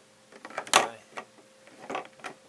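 Short pieces of white PVC pipe being handled and knocked against each other and the wooden table top: one sharp knock about three-quarters of a second in, with a few lighter taps before and after.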